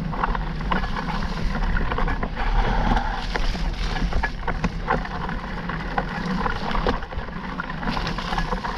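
A mountain bike ridden along dirt singletrack: a steady rumble of wind on the camera microphone and tyres on the trail, with frequent sharp clicks and rattles throughout.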